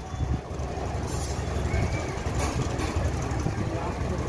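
Steady low background rumble with faint scattered noise.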